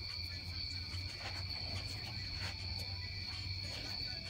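Night insects, crickets, calling in a steady high-pitched chorus, with a low steady hum underneath and a few faint clicks.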